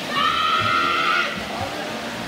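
Spectators at an indoor swimming pool shouting high-pitched cheers to the racing swimmers, one long held yell for about a second, over the splashing of the swimmers.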